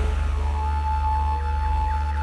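Electronic intro music: a steady low drone under a long held high tone.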